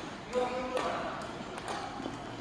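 Faint background voices in a large indoor sports hall, with a few light knocks.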